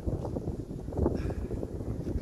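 Wind buffeting the microphone: an uneven low rumble that swells and drops.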